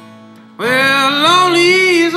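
Acoustic guitar strumming, then a man's singing voice comes in about half a second in, holding one long, wavering note over the guitar and far louder than it.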